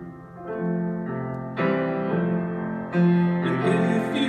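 Grand piano playing a slow chordal passage with no singing, a new chord struck about every half second and the low notes ringing on. A louder chord comes about three seconds in.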